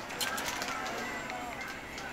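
Faint television speech from the room, with a few light clicks in the first half second.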